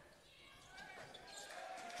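Faint basketball arena ambience: a low crowd murmur that swells slightly, with a few soft knocks.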